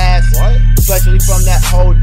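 Hip hop track: a beat with heavy bass and drum hits about twice a second under a rapped vocal.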